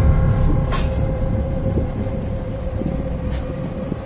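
A low rumbling drone with a steady hum over it, a few faint clicks, slowly fading: a horror soundtrack sound effect.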